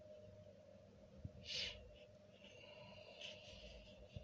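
Near silence with a faint steady hum. About a second and a half in comes a short rustle of hands working soil in a plastic nursery pot, and a faint high steady tone follows later.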